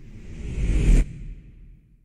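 A whoosh transition sound effect that swells for about a second and cuts off abruptly, leaving a low rumble that fades away.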